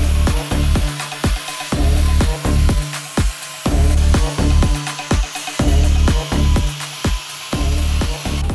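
Electronic dance music with a steady, pounding beat, over the hissing rasp of a handheld angle grinder stripping bark from a tree branch.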